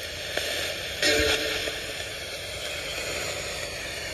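ITC spirit-box radio hissing steady static as it sweeps, with a brief louder snatch of sound about a second in.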